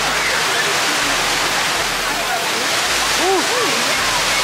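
Water falling down a large water-wall fountain, a steady rushing roar with no break. Faint voices show through it about three seconds in.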